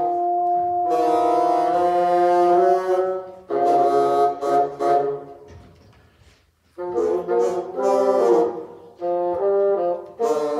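A bassoon ensemble playing sustained chords in several parts. The music dies away a little past halfway, rests for about a second, then comes back in.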